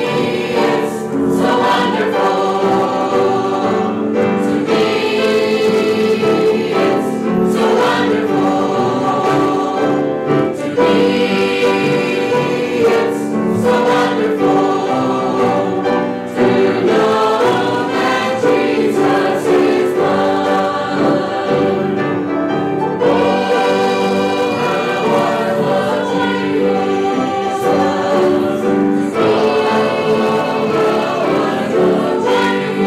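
Mixed church choir of men's and women's voices singing a gospel hymn together, in phrases with short breaks between lines.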